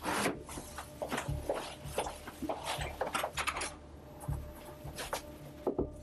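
Rustling and scraping with many scattered light knocks, a person getting up from a chair and moving about a small room.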